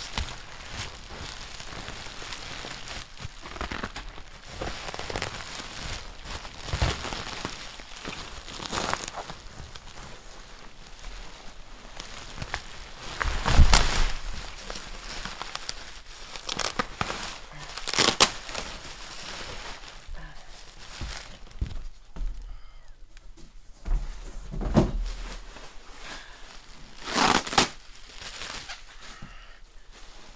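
Plastic bubble wrap crinkling and rustling continuously as it is handled and unwound in layers, with louder bursts of crackling and tearing now and then. The loudest moment, about 13 seconds in, includes a dull thump.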